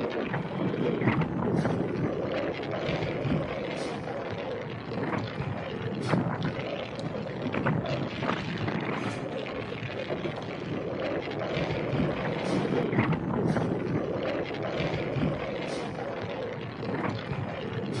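Wind rushing over an action camera's microphone on a moving road bike, mixed with the steady noise of tyres on asphalt, with a few brief clicks scattered through.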